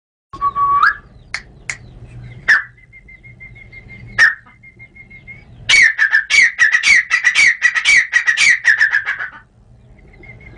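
Grey francolin (teetar) calling: a few sharp single notes in the first seconds, then from about six seconds a loud, fast run of shrill notes, about five a second, that stops shortly before the end.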